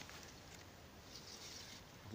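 Near silence: faint outdoor ambience by still water.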